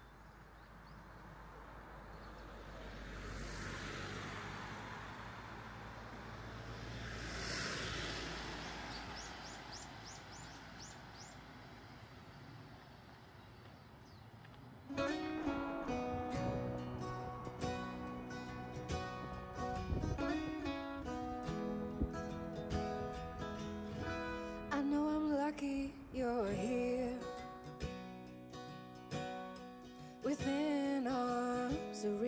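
Outdoor roadside ambience with two vehicles passing, each swelling and fading, and a short run of bird chirps. About halfway through, background music starts suddenly: an acoustic guitar song with a voice.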